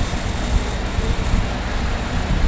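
Steady low rumbling background noise, an even hum with no distinct events.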